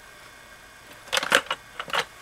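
Hard plastic clicks and rattles from a bucket of Lego bricks being handled, its plastic lid moved over the loose bricks: a quick cluster of sharp clicks about a second in.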